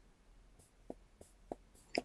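A few faint, short clicks, about three spread through the middle, over low room tone.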